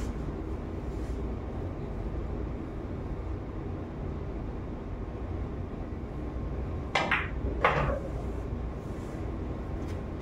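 A pool shot: the cue tip hits the cue ball, then the cue ball clacks against an object ball, two sharp clicks about three-quarters of a second apart, some seven seconds in. Under them is a steady low room hum.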